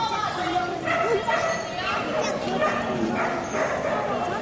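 Dogs yapping and barking over a crowd's chatter.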